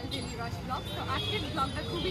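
Busy city street traffic: motorcycles and rickshaws running past in a steady low rumble, with voices talking over it.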